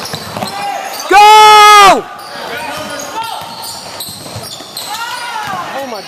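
Basketball bouncing on a gym court under general game noise, with one loud, drawn-out shout about a second in that overloads the recording. Fainter shouts follow near the end.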